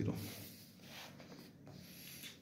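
Blue ballpoint pen writing on ruled notebook paper: faint scratching strokes.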